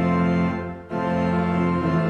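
Church organ playing held chords of an Easter hymn, with a short break about a second in before the next chord.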